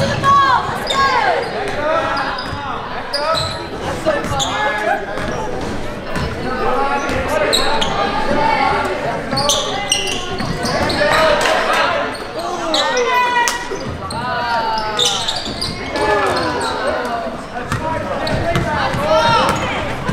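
Basketball game in play on a hardwood gym court: the ball being dribbled and bouncing, with many short squeaks from sneakers on the floor. Voices from players, bench and crowd are heard throughout.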